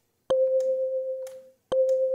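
Kalimba patch synthesized in the Serum wavetable synth: the same plucked note played twice, about a second and a half apart, each starting with a sharp click and ringing out as a pure, fading tone. The level ripples through each note from the volume-modulating LFO tremolo.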